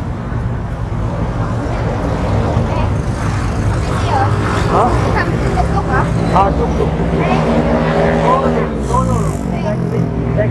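Street traffic: motor vehicle engines running close by on the road, a steady low rumble. Near the end one engine's pitch drops.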